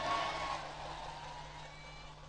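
Echo of a man's voice through an outdoor public-address system fading out after he pauses, over a faint steady hum.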